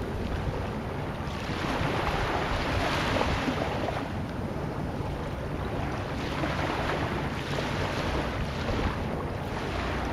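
Sea waves and wind: a steady wash of surf noise that swells and eases every few seconds.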